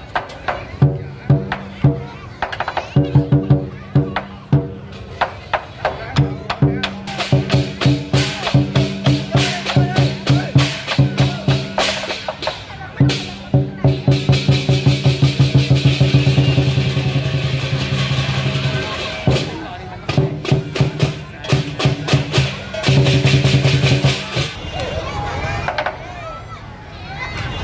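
Lion-dance percussion band playing: a big drum beaten in a steady rhythm with clashing cymbals. The beat quickens through the middle into a fast, unbroken roll, stops briefly, then picks up again and eases toward the end.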